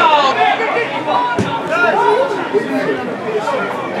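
Many voices calling and chattering over each other, players and spectators at a football match, with a single thud about a second and a half in.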